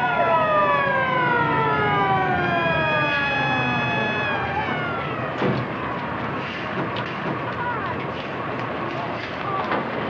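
Fire engine siren wailing and winding down, its pitch falling steadily over the first four seconds or so as the truck arrives. After that comes a loud, steady, noisy wash with a few sharp knocks.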